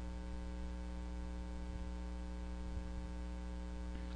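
Steady electrical mains hum with a faint hiss underneath, an even buzz of many evenly spaced tones that stays unchanged throughout.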